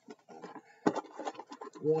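A man's low, wordless murmuring with a sharp click about a second in, running into spoken words near the end.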